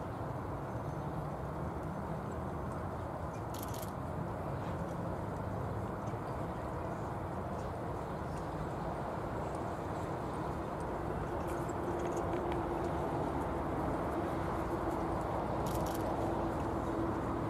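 A pony pair trotting on arena sand, their hooves soft and drawing a carriage, over a steady outdoor noise. The sound grows slightly louder near the end. A steady hum joins in after about eleven seconds, and there are a few faint clicks.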